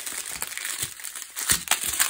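Strips of small plastic bags of diamond painting drills crinkling and rustling as they are handled, with a couple of sharper crackles near the end.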